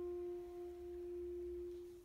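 Bass clarinet holding one soft, nearly pure note at a steady pitch, which fades away near the end.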